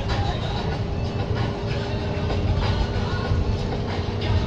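Steady low road and engine rumble inside a moving vehicle's cab, with a sung song playing underneath.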